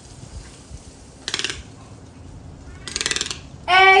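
Toco toucan making two short rattles of rapid clicks, about a second and about three seconds in.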